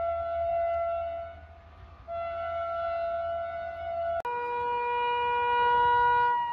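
Indian Railways electric locomotive air horn sounding two long steady blasts. About four seconds in, it gives way abruptly to a second locomotive's horn on a lower pitch, held in one long blast.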